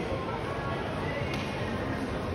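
Shopping-mall ambience: background music over a steady wash of crowd noise and voices, with a brief tap about a second and a half in.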